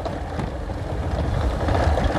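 Motorcycle engine running steadily while riding slowly over a rough dirt track, the rumble growing slightly louder.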